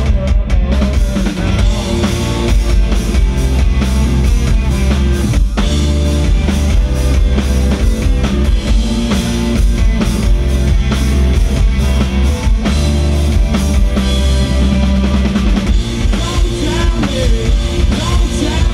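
Emo/post-hardcore rock band playing loud and live: electric guitars, bass and a drum kit with a steady beat of kick and snare hits.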